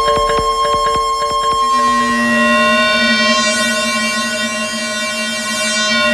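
Kalimba played through a Eurorack modular synthesizer: a quick run of plucked clicks over held tones, then, about two seconds in, one steady sustained synth tone with a rising-and-falling shimmer high up around the middle.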